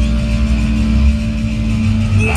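Hardcore punk band playing live and loud: distorted electric guitars and bass holding a low, steady, droning chord, with no vocals.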